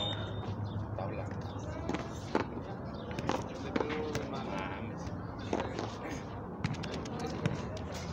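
Sharp smacks of a frontón handball being struck by hand and hitting the wall and concrete court during a rally, at uneven intervals roughly a second apart.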